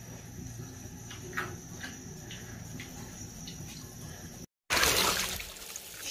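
A few faint clicks and knocks, then, after a cut near the end, water running from a hose into a stainless steel basin, a steady splashing rush.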